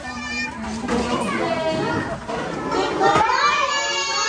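Many small children chattering and calling out at once, getting louder about three seconds in.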